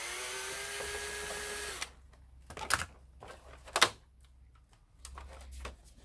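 Cordless drill-driver backing a screw out of a plastic computer cover, its motor running with a steady whine for about two seconds. Several sharp plastic clicks and snaps follow, one louder than the rest, as the clip-on rear cover is prised loose.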